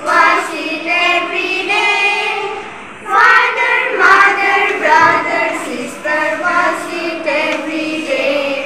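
A group of young children singing an English action rhyme together, with a short break in the singing about three seconds in.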